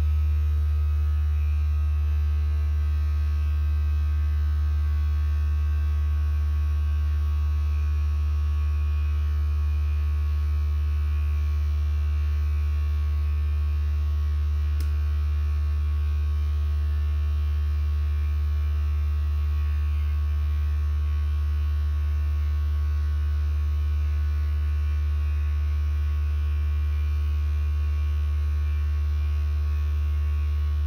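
Steady low electrical hum, like mains hum, with fainter steady higher tones above it and no change in level.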